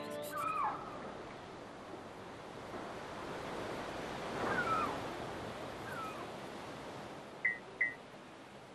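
A soft rushing wash like distant surf, swelling about halfway through and easing off, with a few short falling chirps over it; near the end two short high beeps in quick succession.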